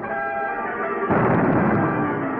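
Orchestral cartoon score holding a chord. About a second in, a loud explosion sound effect breaks in and rumbles on under the music: the attack on the airfield.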